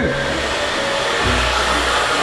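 Handheld hair dryer running steadily as long hair is blow-dried with a round brush.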